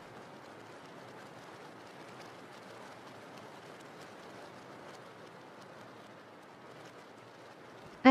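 Steady, faint rain ambience: an even hiss of falling rain with a light patter of individual drops.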